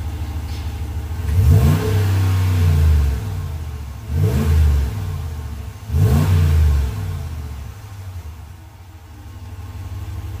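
2019 Ram 1500 Sport's 5.7-litre Hemi V8 idling, then revved three times in quick succession, each rev climbing fast and dropping back before it settles to idle near the end. Heard from behind the truck on the stock exhaust with the muffler still fitted.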